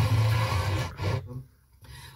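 FM car radio playing a station's music, which cuts out to near silence for about half a second just past the middle as the tuner steps to the next frequency.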